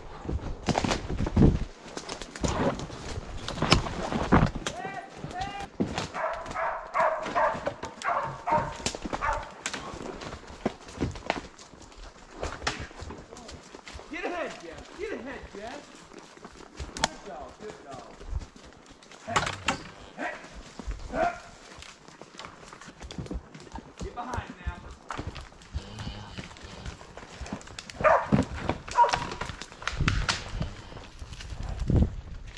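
Hooves of a ridden mule stepping through deadfall and brush in timber, with repeated sharp knocks and cracks among the footfalls.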